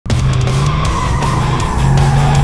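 Music over a car's V8 engine and a long, slowly falling tyre squeal, the car being a 1970 Dodge Coronet R/T 440 Six Pack driven hard.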